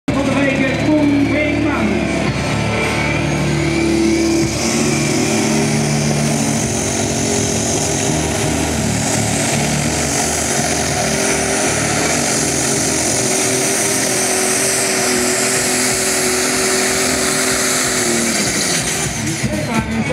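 Light Super Stock pulling tractor's turbocharged diesel engine pulling the sled flat out during a test pull. The engine note holds steady with a high hiss above it, then drops away near the end as the run finishes.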